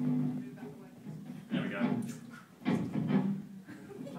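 Indistinct talking, in several short bursts, that the recogniser did not write down.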